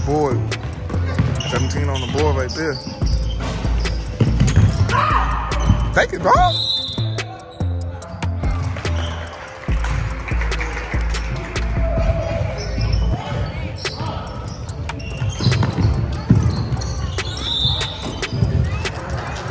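Basketball dribbled on a hardwood gym floor during a game: a run of sharp bounces throughout, with voices of players and spectators.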